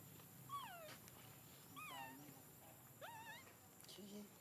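Young macaque giving three faint, thin cries: the first two fall in pitch and the third rises and wavers.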